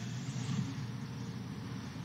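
Steady, low background hiss in a pause between words.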